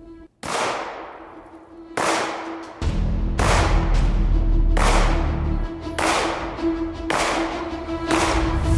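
Sig Sauer P320 X-VTAC 9mm pistol fired about six times in slow, aimed fire, roughly one shot every one to one and a half seconds, each shot followed by a long fading tail, over background music.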